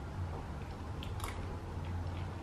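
A person chewing a mouthful of soft chia seed pudding, with a few faint wet mouth clicks, over a low steady hum.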